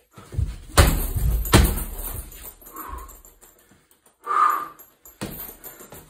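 Gloved punches landing on a hanging heavy bag: two hard thuds less than a second apart near the start, then a single blow about five seconds in.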